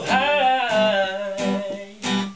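Music: a man's voice sings a long, wordless, gliding vocal run over an acoustic guitar, fading out near the end.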